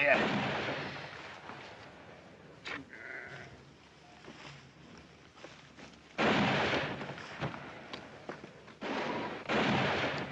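Sheep bleating: a few calls, the loudest about six seconds in and again near the end.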